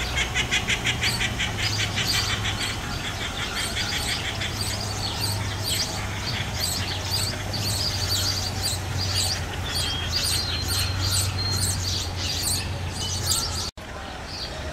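Small birds chirping: a fast run of high chirps at first, then scattered chirps and short calls, over a steady low hum. The sound drops out for a moment just before the end.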